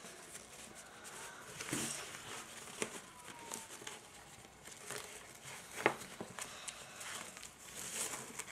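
Faint rustling of chevron ribbon sliding over a paper gift box as it is tied into a bow, with a few soft ticks of hands and ribbon against the box.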